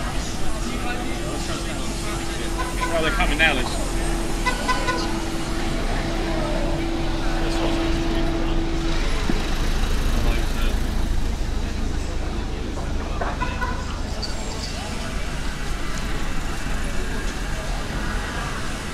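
Busy pedestrian street with people talking around the recorder and a motor vehicle's engine passing close by near the middle, its low rumble lasting several seconds. A steady low note is held for most of the first half.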